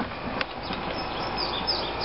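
Birds chirping, a run of short, high chirps, with one sharp click near the start.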